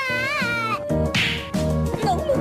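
A high, drawn-out cartoon wail, meow-like, that wobbles and bends downward before stopping near the middle, followed by a short hissing whoosh. Children's background music with a steady bass line plays underneath.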